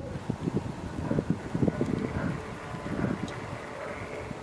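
Wind buffeting the microphone, with irregular low rumbling gusts.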